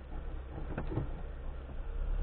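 Car engine idling, heard from inside the cabin as a steady low rumble, with two faint knocks about a second in.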